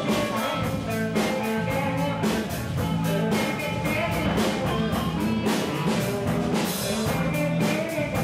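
Live band music with a steady, quick beat and sustained low notes.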